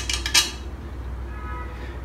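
Small steel flat-head screws clinking against an aluminium heated-bed plate as they are pushed into its holes: two light metallic clicks near the start, then a faint metallic ring.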